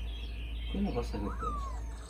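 A hen settled in a nest box to lay, giving a few short low clucks and then one call that falls in pitch.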